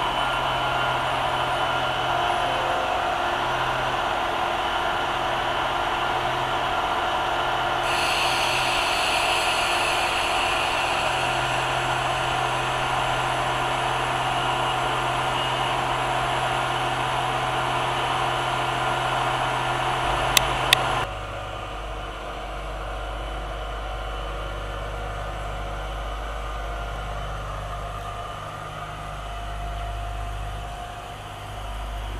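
SA133 diesel railcar running at a standstill with a steady engine hum; about eight seconds in a high whine joins it. After two sharp clicks around twenty seconds in, the whine cuts off and a deeper, lower engine rumble takes over as the railcar gets ready to move.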